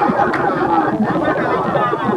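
Only speech: people talking close up, with several voices chattering at once.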